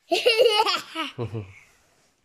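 High-pitched, bubbling laughter for about a second, followed by a brief, lower voice.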